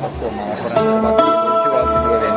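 Guitar being picked and noodled, with a note ringing out from about three-quarters of a second in, over a few dull low thumps.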